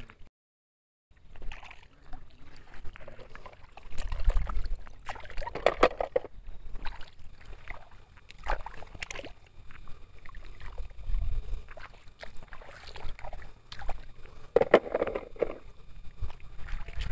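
Shallow river water sloshing and splashing in irregular bursts as plastic toys are picked out of it and handled, starting about a second in.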